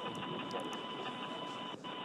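Steady hiss of an open crew–ground radio loop, with two faint steady tones running through it and a brief dropout near the end.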